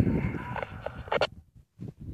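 Yaesu FT-817 transceiver's speaker giving hissy, garbled reception with a short burst a little over a second in, then cutting out abruptly to silence.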